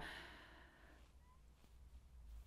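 Near silence: a soft breath fading out in the first second, then only faint room tone with a low hum.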